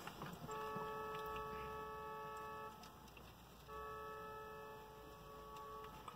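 A distant vehicle horn held down twice, two long faint steady blasts of about two seconds each, a second apart.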